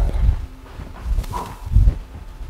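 Two dull low thuds about a second and a half apart, from a person's body movement while doing lunges and squats.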